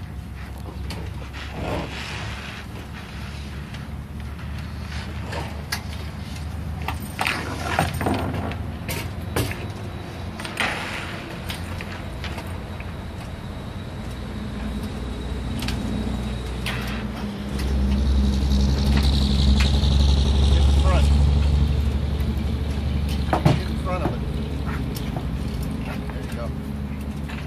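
Sailboat mast and its rigging giving scattered knocks and clinks as the mast is handled and walked up. Underneath runs a low rumble with a steady hum that swells louder in the second half.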